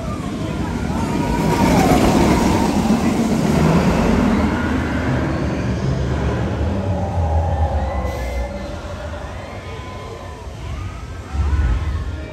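Train of the Jurassic World VelociCoaster, an Intamin launched steel roller coaster, running past on its track: a rumble that builds about two seconds in and eases off toward the end, with a sudden low surge near the end.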